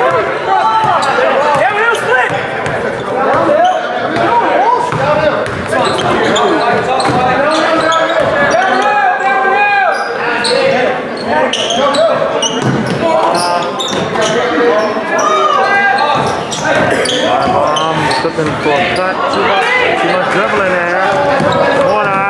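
Basketball dribbling and bouncing on a hardwood gym floor during live play, with voices from the players and crowd echoing in the gym.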